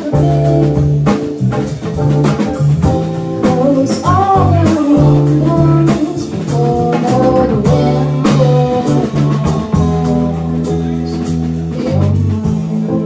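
Live band playing a song: electric bass guitar, keyboard and drum kit, with a singer's voice carried over the band.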